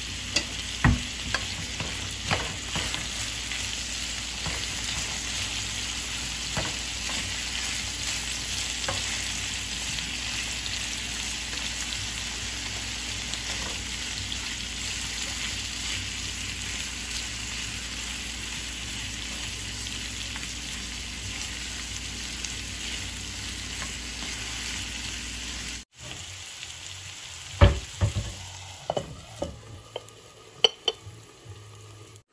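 Sliced potatoes and onions sizzling in an oiled skillet, a steady hiss with a wooden spoon knocking and scraping in the pan as they are stirred. Near the end the sizzle drops away and a few sharp clinks and knocks follow as a glass lid goes onto the pan.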